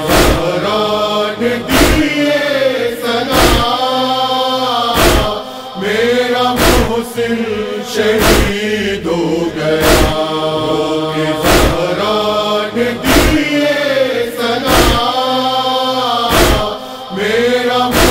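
Noha: male voices chanting a drawn-out mournful refrain, over a steady beat of matam, hands striking the chest, about five strikes every four seconds with every other strike louder.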